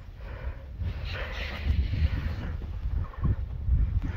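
Wind rumbling unevenly on the microphone, with faint rustling.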